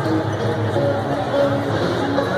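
Swing jazz band music playing for dancers, mixed with crowd chatter.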